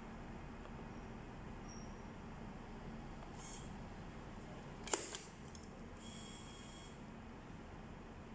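Quiet room hum, then a single sharp click about five seconds in followed by two smaller clicks: the label printer's manual tape cutter being pressed to cut off the printed label strip.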